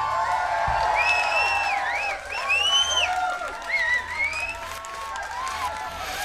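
Concert crowd cheering, whooping and applauding right after a rock song ends, the noise gradually dying down.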